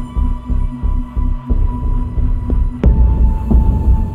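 Ambient meditation music: a deep, pulsing low drone under long held tones, with a single sharp chime-like strike a little under three seconds in.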